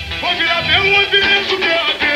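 Samba-enredo sung by a male lead voice over the samba school's percussion band (bateria), playing continuously.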